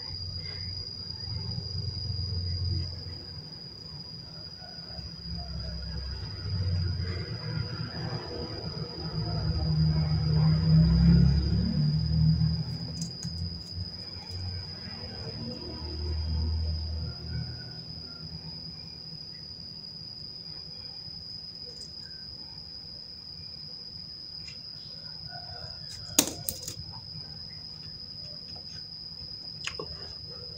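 A steady high-pitched tone throughout, over low rumbling that comes and goes during the first half. There is one sharp click about 26 seconds in.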